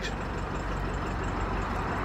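Steady low rumble of road vehicle noise, with no distinct events.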